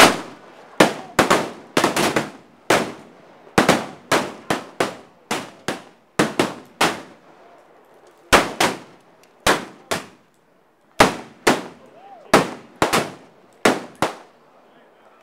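Gunfire from several revolvers firing blanks: about thirty sharp shots in quick, irregular volleys, with a short lull a little past the middle.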